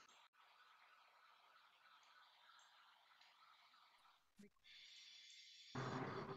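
Near silence: a faint steady hiss of a video-call audio line, opened by a sharp click. A small click comes about four seconds in, and a short, louder rustle near the end.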